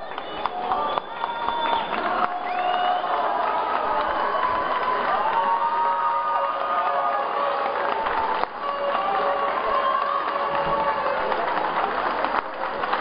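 Arena crowd cheering and shouting as the winners of a lucha libre bout are declared, with many voices calling out over one another.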